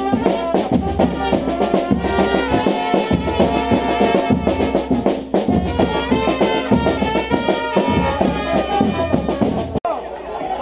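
Brazilian fanfarra of brass and drums playing: trumpets carry the tune in held and changing notes over a steady bass-drum beat. The music breaks off abruptly just before the end.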